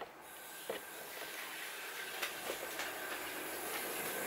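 A steady hiss that grows slowly louder, with a few faint knocks.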